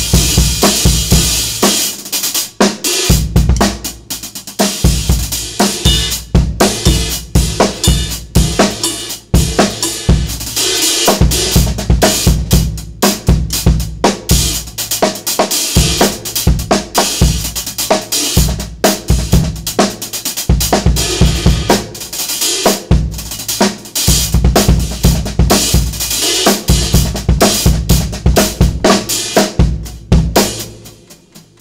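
Drum kit playing a steady groove on bass drum, snare and hi-hat. The hi-hat is a 20-inch pair made from two ride cymbals: a Sabian AA El Sabor ride on top and a Meinl Byzance 20-inch Dark Ride below.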